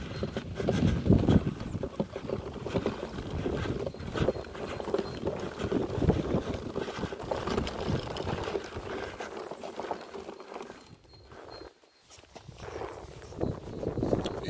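Wind rumbling on a handheld camera's microphone, with footsteps and handling noise from someone walking across grass; it drops away briefly near the end.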